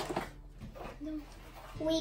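Mostly quiet room: a child's short hummed sound about a second in, then she starts talking near the end.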